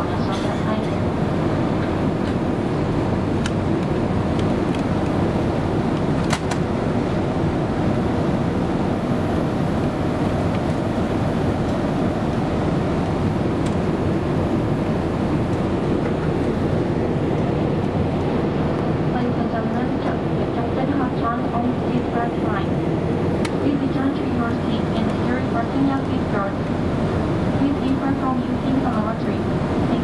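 Boeing 787-8 airliner cabin noise during the climb after takeoff: a steady, loud rush of engine and airflow, with a few sharp clicks. A voice is heard faintly under the noise in the last third.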